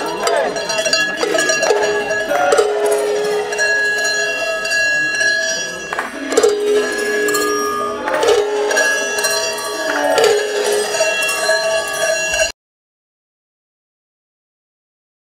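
Large Swiss cowbells (Treicheln) clanging in a repeating swing of about one beat every two seconds. The ringing cuts off suddenly near the end, leaving dead silence.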